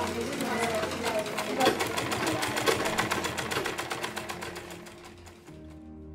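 Mechanical sewing machine stitching, a rapid, even clatter of the needle running that fades away near the end, with voices faintly in the background. Soft music comes in at the very end.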